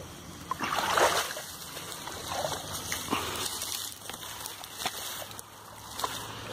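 Water splashing in short irregular bursts, the loudest about a second in, with a few sharp clicks.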